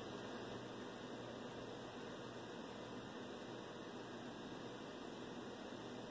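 Faint, steady hiss with no distinct events.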